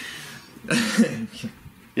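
A man laughing, one short burst of laughter a little under a second in.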